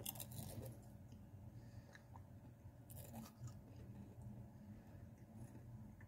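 Faint crunching of Pringles potato crisps being chewed with the mouth closed, in two short spells, one at the start and one around the middle, over a low steady hum.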